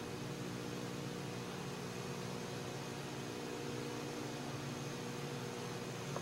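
Steady low hum with a faint hiss and a thin high whine, unchanging throughout, with no distinct events.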